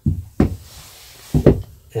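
Knocks of a cordless drill and drawer slide being handled against a plywood cabinet: one sharp knock about half a second in and a quick double knock about a second and a half in.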